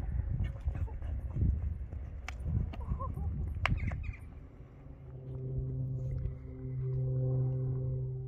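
Outdoor sound of a horse being ridden over show jumps in a sand arena: irregular low rumbling with scattered sharp knocks for the first few seconds, then a steady low hum from about five seconds in.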